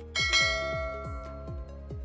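A bell chime sound effect rings once, struck just as the notification bell is clicked, and fades away over about a second and a half. It plays over electronic background music with a steady beat.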